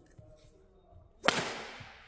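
A badminton racket hitting a shuttlecock once, a single sharp crack a little past the middle that rings on and fades in the hall's reverberation.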